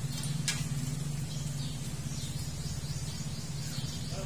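Outdoor background sound: a steady low hum, one sharp click about half a second in, and faint bird chirps.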